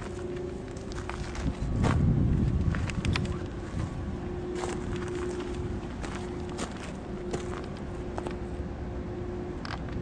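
Handling noise from a handheld camera being moved, with scattered light clicks and a low rumbling stretch a couple of seconds in, and footsteps on dirt. A faint steady hum comes and goes underneath.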